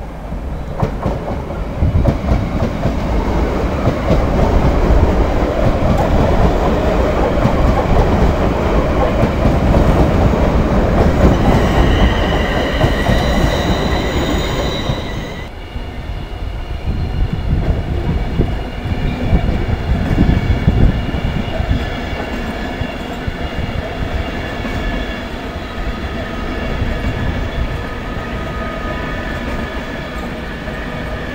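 A London Midland Class 350 Desiro electric multiple unit rolls past over the rails, a loud rumble with high squealing tones building near the middle. After an abrupt cut about halfway, a Virgin Class 390 Pendolino electric train passes slowly with a steady rumble and high whining and squealing tones from its wheels and traction equipment.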